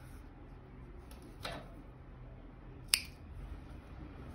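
Small scissors snipping cotton yarn once, a single sharp click about three seconds in that cuts off the sewing thread's tail. A softer, brief rustle of the yarn comes about a second and a half in.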